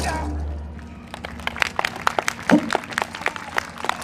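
The end of the recorded dance music fades out in the first second. Then the audience claps in scattered handclaps, with one short voice call about two and a half seconds in.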